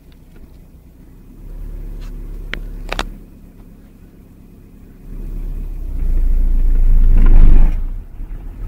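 Volkswagen car's engine pulling away in first gear as the clutch is let out slowly, heard from inside the cabin as a low rumble. There are a couple of sharp clicks about three seconds in, and the rumble builds louder from about five seconds in, peaking and dropping off just before the end.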